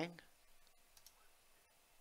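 A few faint computer mouse clicks, choosing a line tool from a menu and placing the line on a chart, over near-quiet room tone.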